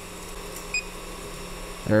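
A single short, high electronic beep from the Elegoo Neptune 4 Pro's touchscreen as a Z-offset button is tapped, about a third of the way in, over a low steady hum.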